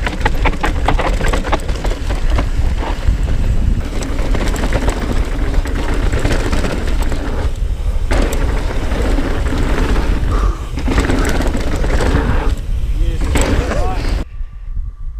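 Mountain bike riding downhill at speed: tyres rumbling and crunching over rock and dirt, with many sharp clatters as the bike hits bumps, and heavy wind rumble on the microphone. The sound changes abruptly just past halfway.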